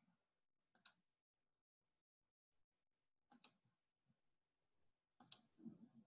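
Three quick pairs of computer mouse clicks against near silence: about a second in, just past three seconds and just past five seconds.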